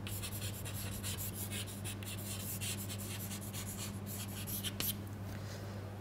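Chalk writing on a blackboard: a run of quick scratching strokes that ends about five seconds in. A steady low electrical hum runs underneath.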